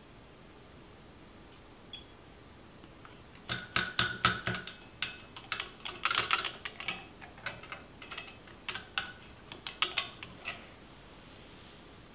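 Clicks and light glass clinks from a small amber glass bottle and a separatory funnel's plastic stopcock being handled. They come in irregular runs from about three and a half seconds in until about ten and a half seconds.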